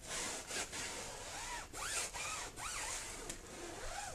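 Foam applicator block rubbing tire dressing onto a rubber tire sidewall: a steady scrubbing with a few short squeaks partway through.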